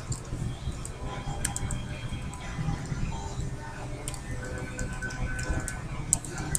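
Computer keyboard keys clicking at an uneven pace as text is typed, over a low steady hum and faint background music.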